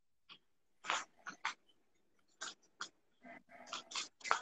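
A person breathing hard with effort: short, sharp, noisy breaths and puffs, about eight of them, coming closer together near the end.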